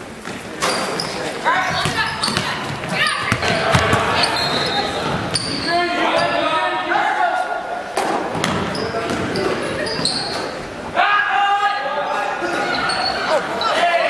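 Basketball game in a gym: the ball bouncing on the hardwood floor amid shouting voices of players and spectators, all echoing in the hall. The voices rise sharply about a second in and again near eleven seconds.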